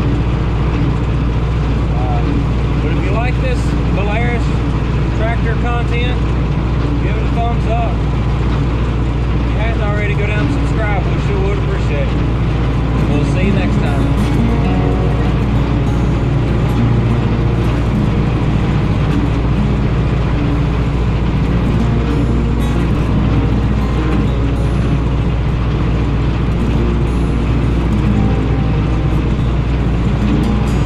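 Belarus 825 tractor's non-turbo diesel engine running steadily, heard from inside the cab, with music playing over it.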